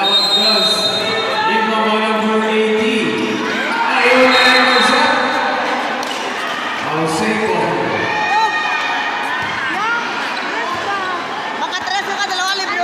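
Basketball being dribbled on an indoor court, under the voices and shouts of a large crowd echoing in the gym.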